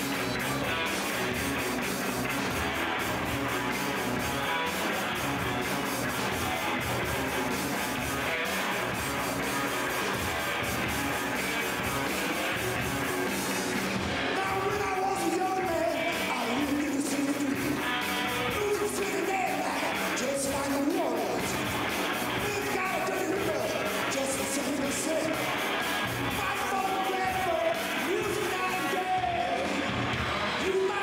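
Live electric blues-rock band playing: electric guitar, bass guitar and drums. A man's singing voice comes in about halfway through.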